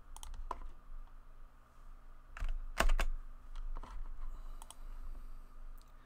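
Computer keyboard being typed on in short, irregular bursts: scattered key clicks with pauses between them, the loudest about three seconds in.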